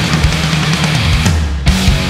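Hard rock band playing an instrumental passage: a heavy distorted electric guitar riff over bass and drums. Near the end the drums drop out briefly under a held low note, then the full band comes back in.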